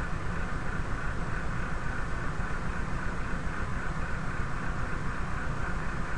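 Steady background noise: a low hum with hiss, with no distinct events.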